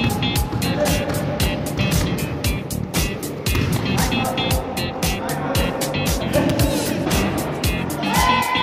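Background music with a fast, steady beat, about four strokes a second, under held synth-like notes that shift pitch every second or so.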